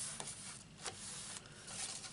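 Hands rubbing and handling cardstock, faint paper rustling with a couple of light ticks as the glued inside layer is pressed down and the card is lifted.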